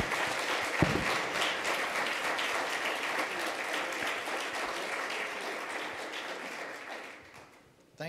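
Audience applauding steadily, with one sharp knock about a second in; the clapping dies away over the last second or so.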